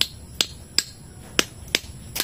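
A small metal tool tapping a peach pit on a wooden stump, five sharp clicks at an uneven pace, cracking the hard shell to get at the seed inside.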